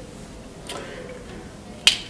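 A single sharp, loud click near the end, a felt-tip marker being capped, over faint room tone.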